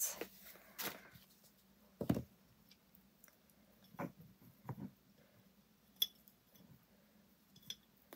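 Quiet handling of a glass jar and a spool of twine on a craft mat: a few small, separate knocks and taps, the clearest about two seconds in, as the twine around the jar's rim is tucked and finished by hand.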